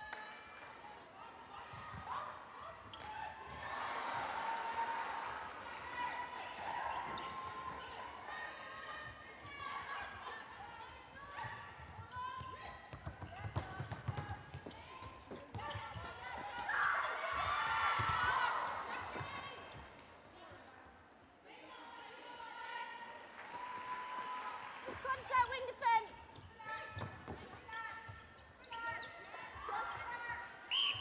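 Indoor netball game: players calling out and spectators' voices echoing in a large sports hall, over sharp knocks of the ball bouncing and being caught. The crowd noise swells louder about 17 seconds in.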